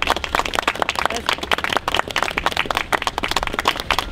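A small group of people clapping their hands in steady, fast applause, with some voices mixed in.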